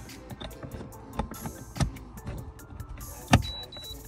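A few sharp clicks and knocks of a code reader's OBD-II plug and cable being handled against plastic trim under a car's dashboard, the sharpest about three seconds in, followed by a brief high-pitched tone in two short parts.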